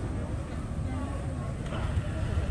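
Busy street ambience: many people chattering at once over a steady low rumble of motorbike traffic.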